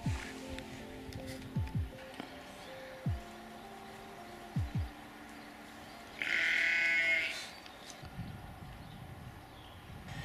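A sheep bleats once, loudly, for about a second, about six seconds in. Under it runs quiet background music of slow held notes with low falling pulses.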